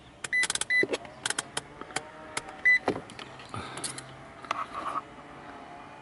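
Digital multimeter giving three short high beeps, two close together near the start and one about halfway through, among sharp clicks and knocks as its selector is set to volts and the test probes are handled at the OBD2 connector pins.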